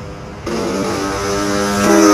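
A person's voice holding one long, steady, buzzing note at a fixed pitch, starting about half a second in and growing louder near the end.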